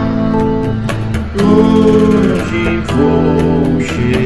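Black solid-body electric guitar playing held chords and melody notes that change about every second, over a light, even percussion beat.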